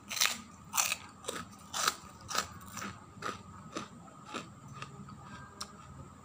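Crunchy fried kerupuk cracker being bitten and chewed with the mouth: sharp crunches about two a second, loudest at first and growing fainter as the piece is chewed down.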